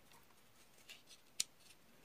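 A few faint, short plastic clicks from a pistol-grip RC transmitter being handled, the sharpest about one and a half seconds in.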